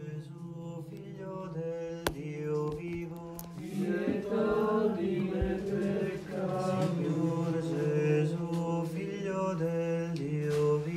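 Slow vocal chant: a melody line moving over a steady held low drone note, growing louder about four seconds in.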